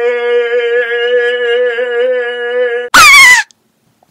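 A man's long, loud held shout on one steady pitch with a slight wobble, breaking off about three seconds in. It is followed by a half-second, very loud, piercing shriek that falls in pitch: a jump-scare scream.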